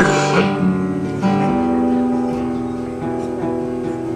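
Guitar accompaniment between sung lines: a strummed chord at the start and another about a second in, each left to ring and slowly fade.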